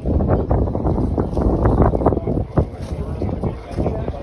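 Wind buffeting the phone's microphone: a loud low rumble with gusty rustling.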